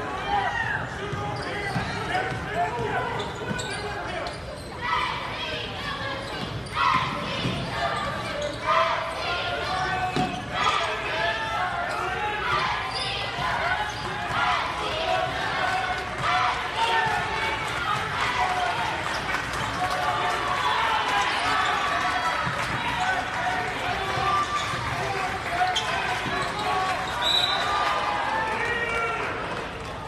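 A basketball being dribbled on a hardwood gym floor, with short bounces and knocks over constant crowd chatter from the stands, all echoing in the large gym.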